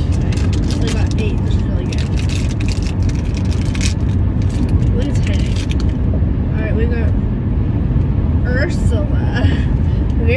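Steady low road rumble inside a moving car's cabin. Over it, for roughly the first six seconds, come rapid crinkling and rustling of plastic packaging as a toy figure pack is opened.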